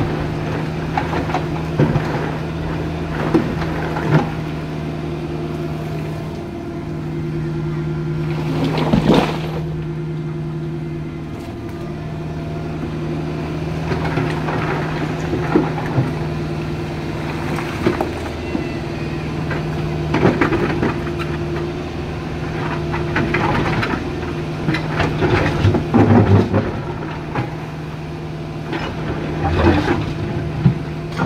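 Caterpillar 305.5E2 mini excavator's diesel engine running steadily under hydraulic load as its bucket digs in a rocky riverbed, with intermittent knocks and scrapes of stone. The engine note dips briefly twice as the load changes.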